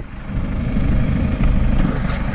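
KRM flail topper on a Massey Ferguson tractor running as it cuts grass: a steady, deep mechanical running sound from the tractor engine and the spinning flail rotor.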